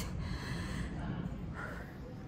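A woman breathing hard, out of breath from climbing four flights of stairs.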